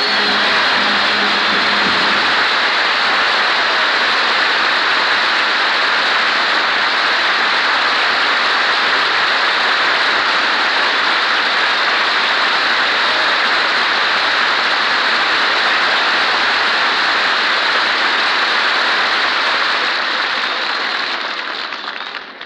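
Studio audience applauding, a steady wash of clapping that fades out near the end.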